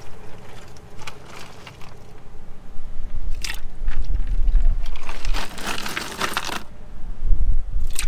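Ice cubes crunching and rattling as they are handled and put into the water of a bait bucket, with wet splashing from a hand in the water. The noise comes in irregular stretches, most sustained from about five to six and a half seconds in, over a low rumble.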